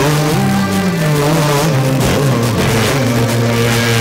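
Music from an FM car radio tuned to 88.8 MHz, received from a distant station over long-range propagation.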